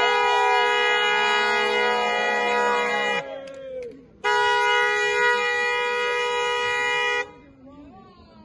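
Air horn blown in two long, loud blasts of about three seconds each, a second apart, each cutting off sharply, with voices faintly underneath and after.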